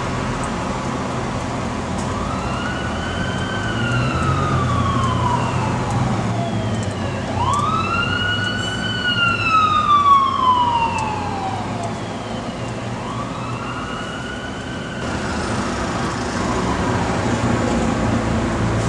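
Emergency-vehicle siren wailing in three slow sweeps, each rising quickly and falling away slowly; the second sweep, in the middle, is the loudest. A steady low hum runs underneath.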